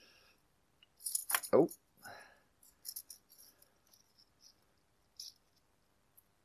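Faint small metal clicks and light rattles as a DIY hose-clamp band and its clip housing are worked in the fingers, the band end being pushed back through a slot.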